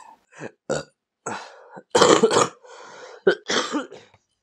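A person making short, throaty, burp-like sounds in several separate bursts, the loudest and longest about two seconds in.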